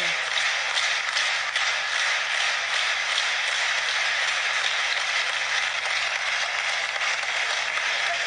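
Steady applause from an audience, a continuous dense clatter of many hands with no single claps standing out.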